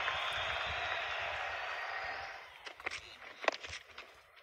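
Cricket ground ambience picked up by the field microphones: an even hiss of crowd and outdoor noise that dies away over the first couple of seconds, followed by a few faint clicks.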